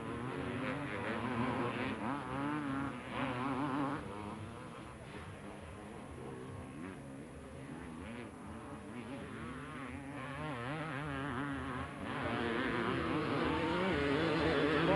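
250 cc two-stroke motocross motorcycle engines racing, revving up and down in pitch. They get louder near the end as a bike passes close.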